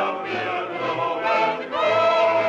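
A chorus of voices singing a song, holding long notes that change pitch every half second or so.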